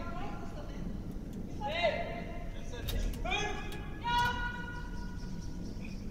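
Curlers' voices calling out across the ice, distant and high-pitched: a few short calls, then one long held call over the last two seconds, above a steady low hum.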